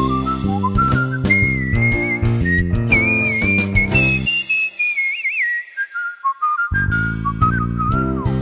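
Whistled melody over an instrumental backing, the tune climbing to higher notes and then falling back. About halfway through, the backing stops for a couple of seconds, leaving the whistle alone, then comes back in.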